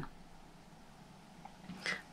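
Quiet room tone in a pause in speech, with a faint short noise near the end.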